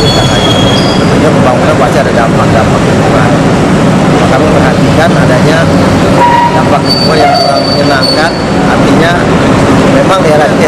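A man talking over loud, steady heavy-engine noise.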